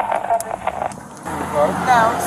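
Speech: brief, indistinct talking. The background changes abruptly about a second in, where the recording is cut, and a voice then speaks again.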